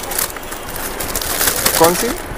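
Clear plastic packaging crinkling and rustling as a boxed saree is handled and lifted out, close to the microphone, with a voice starting near the end.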